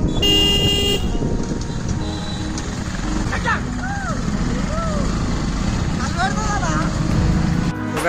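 A vehicle horn toots once, briefly, near the start, over the low running of a motorcycle engine. Then sheep and goats in a herd on the road bleat about four times, short rising-and-falling calls.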